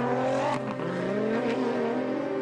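A rally car's engine running hard, with a steady note that wavers slightly in pitch as the car drives across a gravel desert stage.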